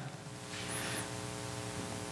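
Steady electrical mains hum with a faint hiss underneath, a low buzz of evenly spaced tones in the audio system.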